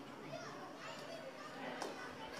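Faint background voices in a hall, children's chatter among them, with a short click near the end.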